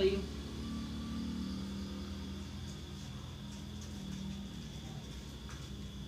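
A steady low mechanical hum with a faint, steady high whine above it, from a running motor or appliance.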